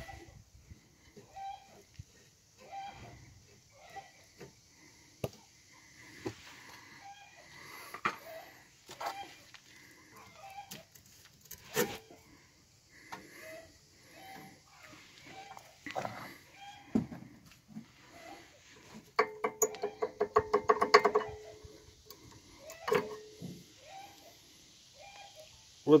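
Rear brake pads of a Nissan X-Trail rattling and ringing in their caliper as they are knocked and shaken by hand, with scattered knocks and a burst of rapid metallic rattling about three-quarters of the way through. The ringing comes from the pads themselves sitting loose in the caliper bracket, not from the caliper.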